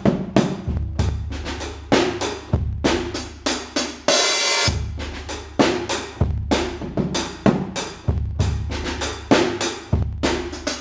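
Drum kit played in a slow groove, the six-based variation of a cut-time beat, with sharp strokes about four a second over bass drum. The left hand keeps time while the right moves between snare, toms and cymbals. A cymbal crash rings about four seconds in.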